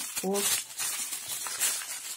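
Black plastic mailer bag crinkling and rustling in the hands as it is cut open with scissors, in irregular crackles.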